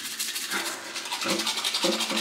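Manual toothbrush scrubbing rapidly back and forth across teeth, a fast, even run of brushing strokes.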